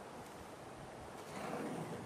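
Faint outdoor background noise with wind on the microphone. About one and a half seconds in, the noise swells a little for half a second.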